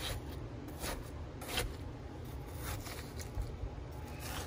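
A knife cutting into watermelon flesh: several short scraping strokes.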